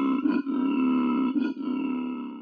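A deep, buzzing drone with grunt-like character, broken by a few short gaps, faded in and out as a sound effect.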